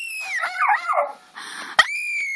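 A small dog howling: a high held note that slides down into lower, wavering notes, then after a short pause a sharp click and another high howl that begins near the end.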